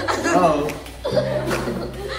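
A few people talking and chuckling.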